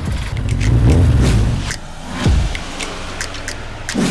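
A motor vehicle's engine revving, loudest in the first two seconds and then settling lower.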